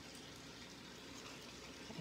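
Faint steady background hiss of room tone, with no distinct sound standing out.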